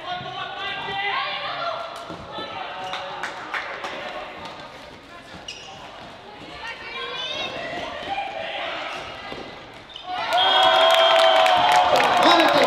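Floorball game in a sports hall: sharp clicks of sticks and the plastic ball on the court and players' shouts. About ten seconds in, spectators break into loud cheering and clapping as a goal is scored.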